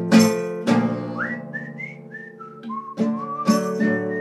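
Whistled melody over a strummed nylon-string classical guitar. The guitar strums in a steady pattern; the whistling comes in about a second in as a run of short clear notes, drops lower around three seconds, then holds a long high note near the end.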